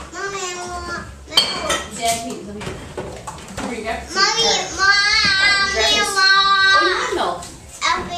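A young child's high-pitched voice, vocalising without clear words, loudest and longest from about four to seven seconds in, with a few sharp clicks early on.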